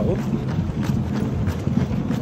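A runner's footsteps on the road, an even stride of about two to three steps a second, picked up by a handheld phone that jolts with each step, over a steady low rumble of movement and wind.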